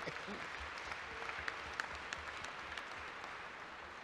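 Large audience applauding, a steady, dense patter of many hands.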